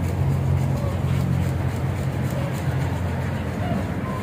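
A steady, low engine rumble, like a motor vehicle running nearby, easing off somewhat in the second half, with faint voices in the background.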